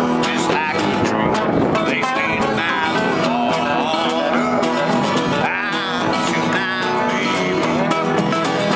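Acoustic guitar and resonator guitar played together in a country-style jam, with a man singing over them.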